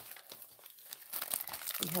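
Clear plastic packaging crinkling and rustling in irregular crackles as it is handled, busier in the second half.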